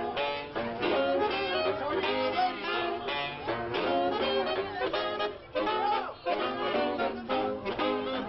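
A saxophone quintet playing a jazz tune live, several saxophones sounding together in moving, rhythmic notes, with a couple of short breaks in the phrasing past the middle.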